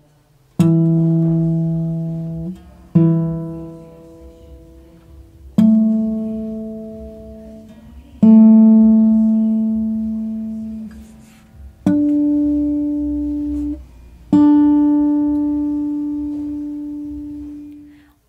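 Acoustic guitar intonation check: a 12th-fret harmonic, then the same string fretted at the 12th fret, done on three strings in turn. That makes six single plucked notes in three pairs, each pair higher than the last, each note ringing and fading over about two and a half seconds.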